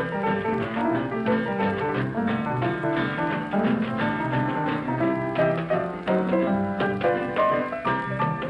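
Texas blues piano playing an instrumental passage: a busy run of short notes over a steady, repeating bass rhythm.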